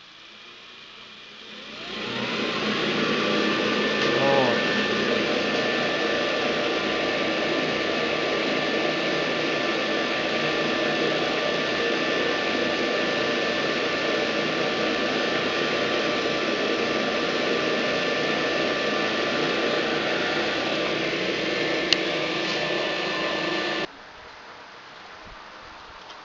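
Electric extractor fan of a homemade workshop exhaust switched on: it spins up with a rising whine over about a second, then runs steadily with a loud rush of air and a steady two-note whine, drawing through a perforated sewer-pipe duct.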